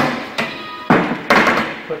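A wooden broom handle knocking and clattering against a wall-mounted broom holder as the broom is lifted off and hung back on: a few sharp knocks, the longest near the end.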